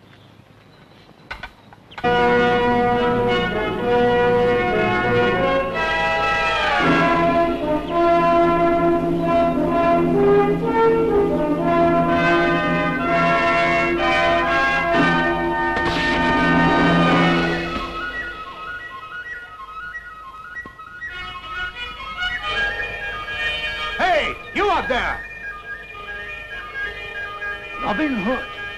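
Dramatic orchestral action music, brass among the instruments, coming in loud about two seconds in after a near-quiet start and dropping to a softer level in the second half.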